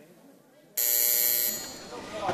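Electronic buzzer in a legislative chamber sounding suddenly about three-quarters of a second in, holding one steady buzzing tone for under a second, then fading. It is the signal that electronic voting has opened.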